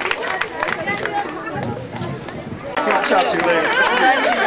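A crowd of adults and children talking over one another, with a few scattered claps at the start. The chatter grows louder about three seconds in.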